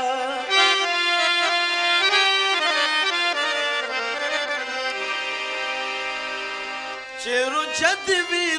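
Harmonium playing a melodic interlude of held notes that step from pitch to pitch. A man's singing voice ends a line just as it starts and comes back about a second before the end.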